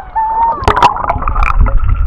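Seawater splashing and gurgling around a camera as it goes under the surface, with sharp splashes about half a second in, then a low underwater rumble.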